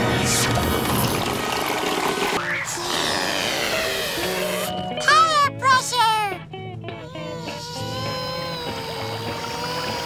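Cartoon sound effects over background music. A rushing whoosh fills the first couple of seconds, then comes a rising glide. About five seconds in there is a short run of loud, wobbling, bending tones, after which steady background music carries on.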